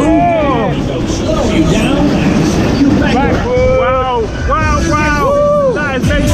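Riders whooping on a spinning fairground ride, a short whoop at the start and a run of rising-and-falling whoops from about three seconds in, over heavy wind rumble on the microphone.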